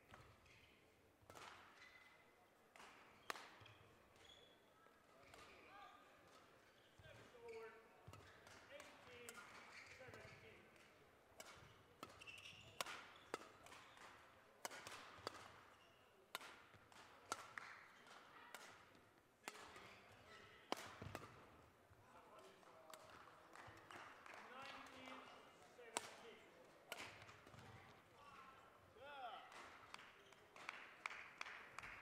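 Badminton rally: sharp racket strikes on the shuttlecock at irregular intervals of about a second, mixed with short squeaks of court shoes on the sports-hall floor.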